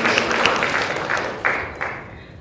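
Applause dying away, with a couple of last claps near the end.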